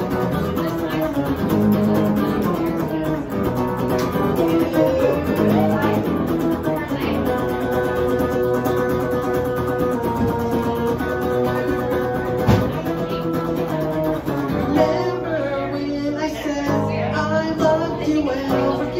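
Amplified hollow-body electric guitar playing an instrumental break in a punk song: held notes and chords over a recurring low part, with one sharp click about twelve seconds in.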